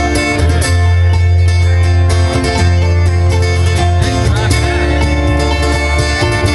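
Live band playing an up-tempo bluegrass-style instrumental passage. Banjo picking and acoustic guitar strumming run over loud, sustained electric bass notes.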